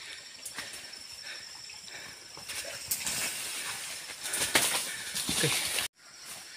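A large male wild boar caught in a snare thrashing in dry leaf litter: rustling and crackling that grows louder in the second half. Under it runs a steady high drone of insects.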